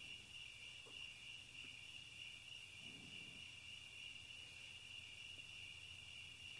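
Faint, steady chorus of crickets: one continuous high-pitched trill over near-silent room tone.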